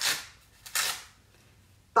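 Two short rustles of a bamboo-fabric cloth nappy being handled and opened out, about two-thirds of a second apart.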